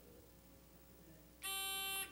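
Near silence, then about one and a half seconds in a quiz buzzer sounds a steady electronic tone for about half a second as a contestant buzzes in to answer.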